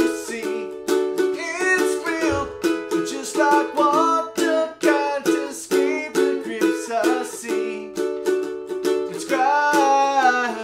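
A ukulele strummed in a steady rhythm, with a man singing over it in short phrases.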